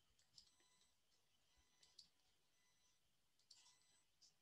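Near silence with a few faint, scattered clicks from a computer being worked.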